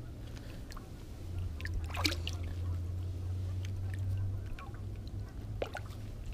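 Light splashing and sloshing as a hooked largemouth bass thrashes at the water's surface and is lifted out by hand, with a few short splashes about two seconds in and again near the end, over a steady low rumble.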